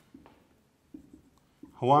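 Marker pen writing on a whiteboard: three short, faint strokes.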